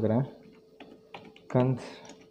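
Computer keyboard keystrokes: a few separate light clicks as a search word is typed.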